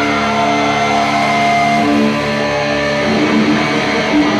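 Rock band playing live, electric guitars and bass holding notes, with the notes changing about two seconds in and again about a second later.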